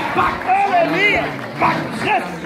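Several voices give short, high, excited calls and exclamations over one another, with one rising and falling cry about halfway through, above the murmur of a crowd.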